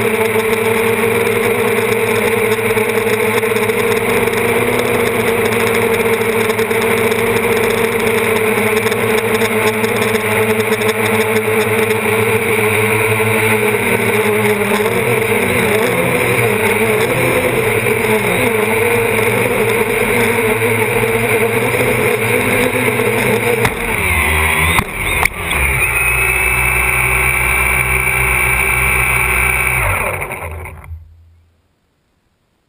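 DJI Flame Wheel F450 quadcopter's brushless motors and propellers running, heard from a camera on the frame: a steady hum that starts to waver in pitch partway through as the craft descends under its Naza flight controller's failsafe. About 24 seconds in there is a brief bump as it touches down, after which the motors keep running on the ground with a different, higher tone.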